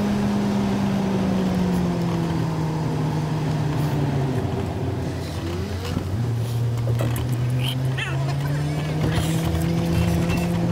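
Car engine and road noise heard from inside the cabin of a moving car. The engine note falls about four seconds in and rises again near the end.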